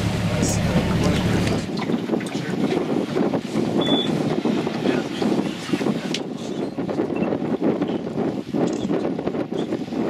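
A boat's motor runs with a steady low hum and stops abruptly about two seconds in. After that comes an uneven rush of wind on the microphone and moving water.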